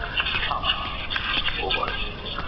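Indistinct voices over steady background noise.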